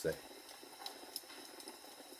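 Faint fire crackling: scattered small pops and snaps over a low hiss.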